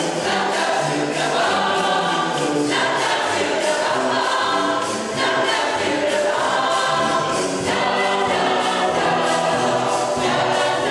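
A boys' choir singing in full chords with a brass band accompanying, the harmony shifting to a new chord every two to three seconds.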